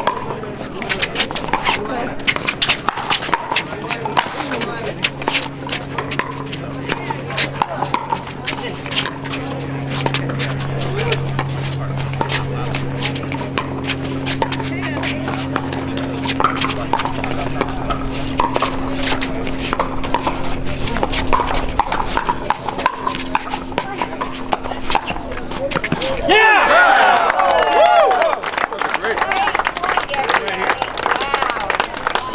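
Pickleball rally: paddles strike a plastic ball again and again in sharp pocks, mixed with shoe squeaks and steps on the hard court, with hits from neighbouring courts. A steady low hum runs through the middle, and a loud voice calls out near the end as the point finishes.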